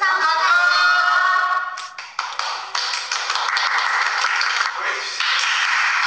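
A group of voices calling out together in unison for about two seconds, then a group clapping.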